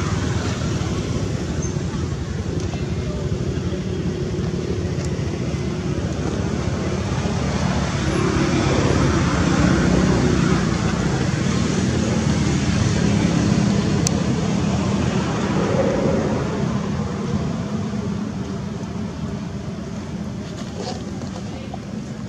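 Steady low rumbling background noise, swelling for a while mid-way, then easing off toward the end.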